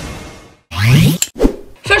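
Logo-sting sound effect: a swelling whoosh fades away, then a short pop-like sound rising sharply in pitch and a single sharp knock.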